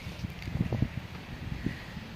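Wind buffeting the phone's microphone: an uneven low rumble with a few stronger gusts around the middle.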